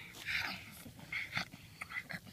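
A child making mock eating noises with her mouth, short snuffling, munching bursts with small clicks, as a wolf pretending to gobble up its prey.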